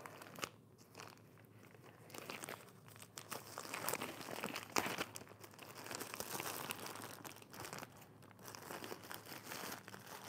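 White plastic poly mailer bag crinkling as it is gripped, twisted and pulled at by hand to tear it open, in irregular crackles with a sharper crack about five seconds in.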